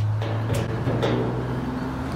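A steady low hum with a few even overtones, holding at one pitch, with a faint click about half a second in.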